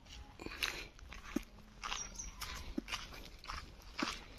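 Faint, uneven footsteps crunching on dry, leaf-strewn dirt ground, roughly two steps a second.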